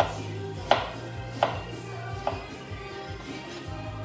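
Kitchen knife chopping through food onto a cutting board: four separate chops, the second, about two-thirds of a second in, the loudest, with none in the last second and a half. Background music plays underneath.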